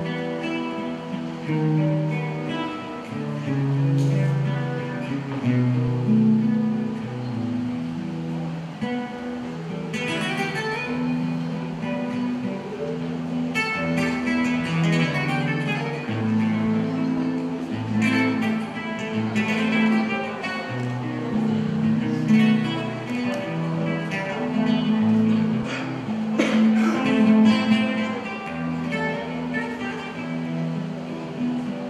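Solo acoustic guitar played fingerstyle: a plucked melody over bass notes, the instrumental introduction before a song's vocal comes in.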